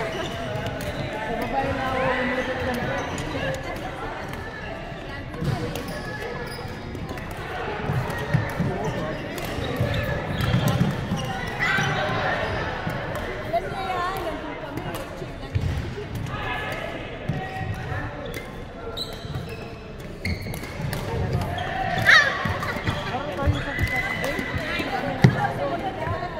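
Badminton doubles rally on a wooden sports-hall court: sharp racket strikes on the shuttlecock and players' footfalls thudding on the floor, with a sharp sneaker squeak near the end.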